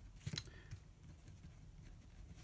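Ballpoint pen drawing a line on paper: a short faint scratch about a third of a second in, then only faint pen-and-paper ticks.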